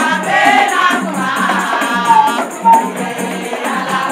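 A group of women singing together in chorus, with a shaker rattling quickly and a steady low beat underneath.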